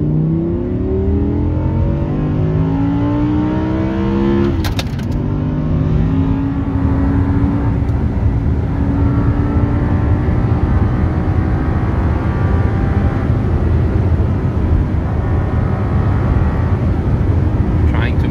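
Audi R8's V10 engine heard from inside the cabin, revving up under full acceleration for about four and a half seconds. A sharp click comes with the upshift, and the engine note drops, then climbs slowly again over loud road and tyre rumble.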